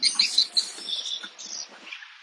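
Small birds chirping: a quick run of high, short chirps, loudest in the first half-second, then thinning out.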